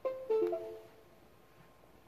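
A short two-part electronic chime of clear tones, one higher group and then a lower one, dying away within about a second. It sounds just as the controller board receives its 12-volt power.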